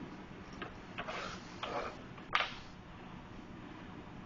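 A few light taps and brief rustling scrapes from hands working tomato quarters on a plastic cutting board, the sharpest tap about two and a half seconds in.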